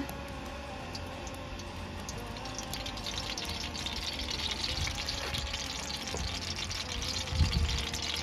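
Melted pork lard poured into a hot metal pan over a wood fire, with a soft sizzle that grows steadily louder as the fat spreads and heats.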